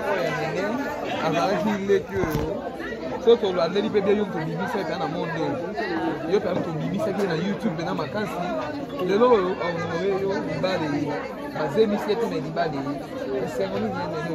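Speech only: several people talking at once, a woman's voice among them.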